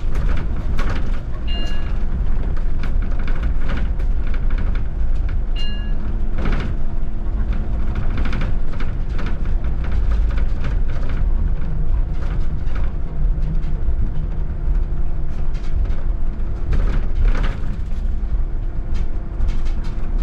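Interior of a VDL Citea electric city bus driving: steady low rumble and a steady hum, with frequent rattles and knocks through the ride. Two short electronic beeps sound, about one and a half and five and a half seconds in.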